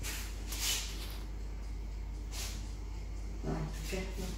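Hands smoothing and pressing a floured, pastry-wrapped log on a silicone mat: three or so soft brushing swishes over a steady low hum.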